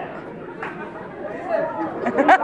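Quiet, indistinct speech and chatter.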